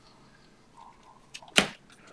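2019 Panini Optic football cards being flipped through by hand: a few faint ticks, then one sharp card snap about one and a half seconds in.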